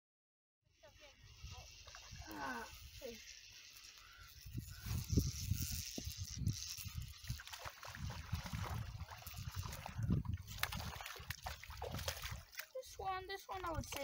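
A hooked rainbow trout splashing at the lake surface as it is played in to the rocky bank, with water sloshing, over gusty wind rumble on the microphone. Sound begins about a second in, and short indistinct voice sounds come early on and near the end.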